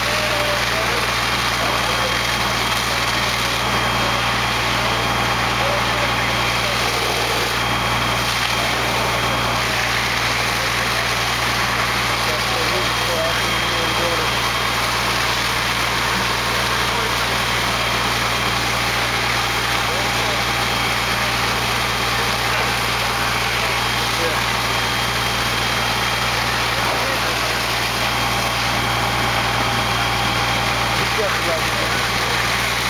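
Fire apparatus diesel engine running steadily under load, driving the pump that feeds the flowing hose lines, with a constant low hum.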